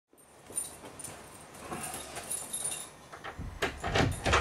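Keys jangling and clicking at a door lock, ending in a few sharp knocks from the lock and handle as the door is unlocked.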